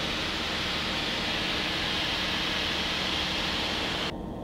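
Steady cockpit noise of a Tecnam P92 Echo Super light-sport aircraft in cruise: engine and airflow heard as an even hiss over a low hum, which cuts off abruptly at the end.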